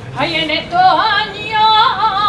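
A solo unaccompanied voice singing a saeta, the flamenco-style devotional song sung to a passing procession image. After a breath, a new phrase begins a moment in, with a wavering, heavily ornamented pitch.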